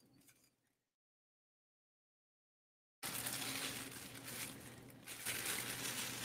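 Painter's plastic sheeting crinkling and rustling as hands gather its corners up and in. The sound drops out to total silence for about two seconds near the start, then the crinkling comes back and goes on.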